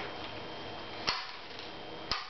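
A Lego ship's toy cannon being fired by hand: one sharp plastic click about a second in, over faint room noise.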